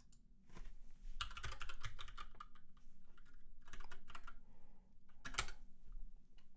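Typing on a computer keyboard: three bursts of quick keystrokes, the longest about a second in and a short one near the end.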